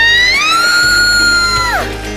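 A long, high scream from a rider dropping down a steep freefall water slide. It rises in pitch, holds steady for about a second, then drops away sharply near the end. Background music plays underneath.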